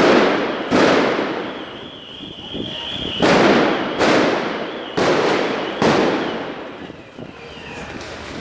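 Six loud explosive bangs go off in quick succession during a street riot, each echoing and fading slowly between the buildings. A high steady tone sounds under the first three seconds.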